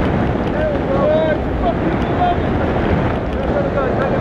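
Steady wind noise buffeting the camera's microphone during a tandem parachute descent under an open canopy.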